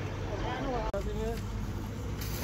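Indistinct voices talking over a steady low engine rumble, with a brief click and drop about a second in.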